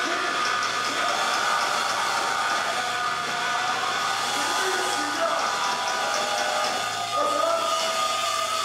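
Live rock band held in a steady wash of distorted guitar and amplifier noise without drum hits, with a voice calling out over it.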